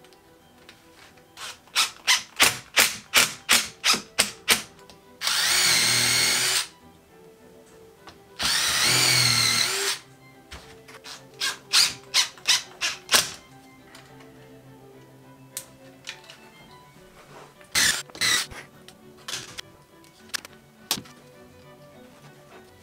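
DeWalt cordless drill/driver run in quick trigger pulses, about three a second, then in two longer runs of about a second and a half each, then in more short pulses and a few scattered ones near the end. These are screws being driven to fasten horn sheaths onto the skull.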